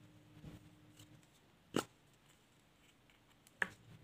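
Two sharp plastic clicks, nearly two seconds apart, as the cap of a plastic glue stick is pulled off and handled; the first is the louder, with a soft knock before it.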